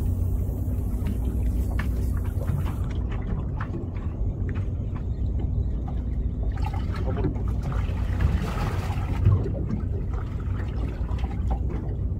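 Boat's outboard motor idling with a steady low rumble, with water sloshing and splashing against the hull for a few seconds past the middle.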